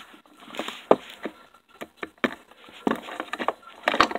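Hooves of a plastic Schleich toy horse figure tapping on a wooden tabletop as it is walked along by hand: a series of light, irregular taps.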